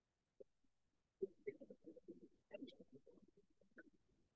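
Near silence, with a faint, muffled voice from about a second in.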